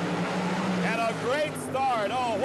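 Two Top Fuel dragsters' supercharged nitromethane V8 engines running at the starting line, a steady low drone that fades under a commentator's voice about a second in.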